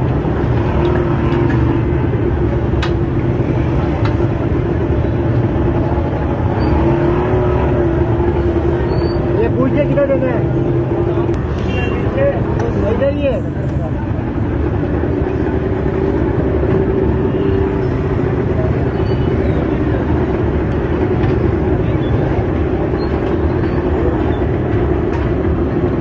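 Loud, steady busy-street ambience: a constant low rumble of traffic and engines with indistinct voices mixed in.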